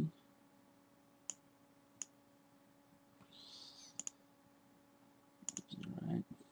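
Computer mouse clicks: single sharp clicks a little over a second and two seconds in, a quick double click near four seconds, and a fast run of clicks near the end, over a faint steady electrical hum.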